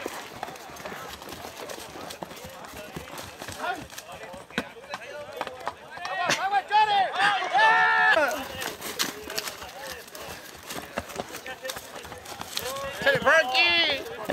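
Men shouting long drawn-out calls of encouragement, loudest in a run about halfway through and again near the end, over horses moving with scattered hoof knocks.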